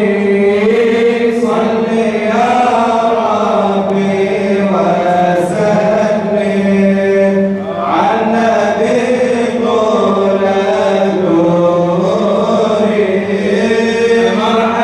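Male voice chanting madih nabawi, Islamic devotional praise of the Prophet, unaccompanied, in long melismatic phrases over a steady low held drone. The phrase breaks off briefly just before the middle, and a new phrase begins.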